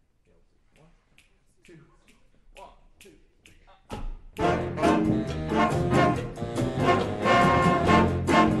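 Faint, evenly spaced ticks in time, then about four seconds in a jazz big band comes in loud, with trombones, trumpets and saxophones over bass and drums in a cha-cha groove.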